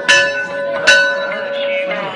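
Temple bell struck twice, about a second apart, each strike ringing on with a steady metallic tone.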